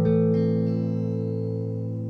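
Electric guitar chord left ringing and slowly fading, with a couple of higher notes picked about a third and two-thirds of a second in, sounded to check the guitar's tone before a song.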